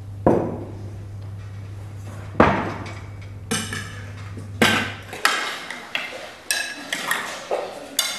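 Dishes and cutlery being handled: two sharp knocks, then a quick run of clinks and rattles from about three and a half seconds in. A low steady hum runs underneath and cuts out about five seconds in.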